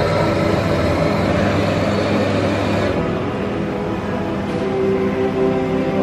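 Background music, with a Melitta coffee machine running and whirring as it prepares a cappuccino; the machine noise stops about three seconds in and the music carries on.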